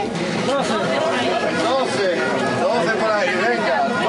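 Speech: voices talking loudly over crowd chatter.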